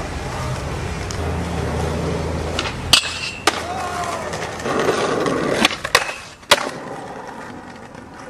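Skateboard wheels rolling on a concrete sidewalk, a steady rumble, then several sharp clacks of the board from about three seconds in.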